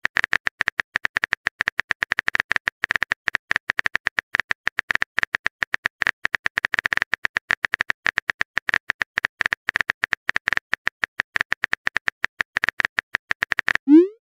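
Phone keyboard typing sound effect: a rapid, even stream of small key clicks, several a second, as text is typed into a chat box. Right at the end a short rising swoosh plays as the message is sent.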